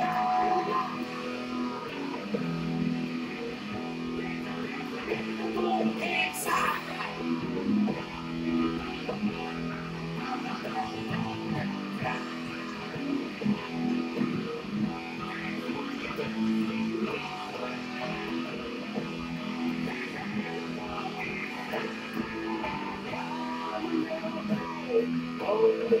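Electric guitar playing a steady, repeating riff, with the notes strongest in the low range.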